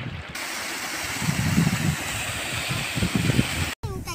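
Wind buffeting the microphone outdoors: a steady hiss with gusty low rumbles, cut off abruptly near the end.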